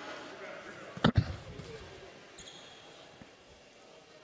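A basketball bounced once on a hardwood gym floor as a free-throw shooter sets up: one sharp thud about a second in over a low gym murmur, followed by a faint brief squeak a little past halfway.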